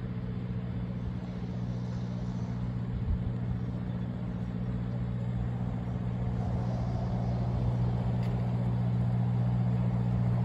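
Narrowboat's engine running at steady cruising speed with a low, even drone that grows gradually louder as the boat approaches.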